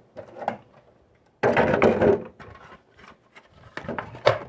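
Handling noise from a 1:24 diecast truck being lifted out of its plastic packaging and set down: a loud scraping rub of under a second about a second and a half in, with light clicks and knocks before and after.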